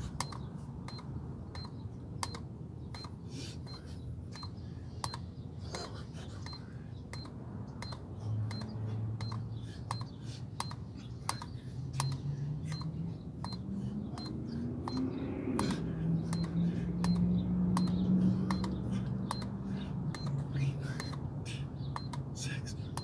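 Electronic push-up counter giving a short beep-click with each push-up, about one a second, as the chest touches its pad. In the second half a low droning sound rises in pitch and grows louder, then holds.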